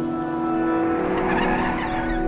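A van's tyres screeching as it pulls up, the skid building about halfway through, over steady organ and synthesizer music.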